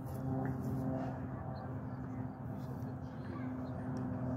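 Steady low hum of an idling vehicle engine, holding one even pitch throughout.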